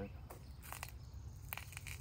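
Quiet outdoor background with a steady low rumble, broken by two brief soft hissing noises, one a little under a second in and one near the end.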